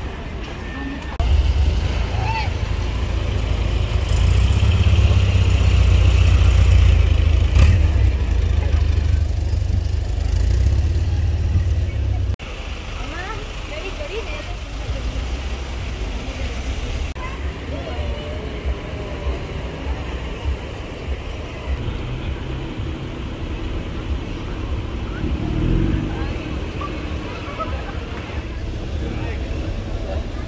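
A car engine running with a deep, steady low rumble for about the first eleven seconds, cutting off suddenly. Then comes quieter street noise with people's voices.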